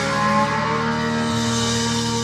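Live rock band's electric guitar and bass holding a sustained chord that rings on, with no drum hits. A new low bass note comes in about one and a half seconds in.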